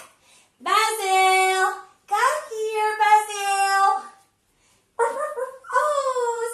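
Unaccompanied singing in a high, childlike voice: three long held phrases with short breaks between them.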